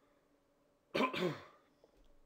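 A man clears his throat once about a second in: a harsh burst followed by a short voiced sound that falls in pitch.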